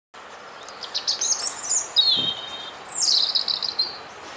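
A small songbird singing: a run of quick high chirps, then a short trill, then a phrase falling in pitch, over faint outdoor background noise.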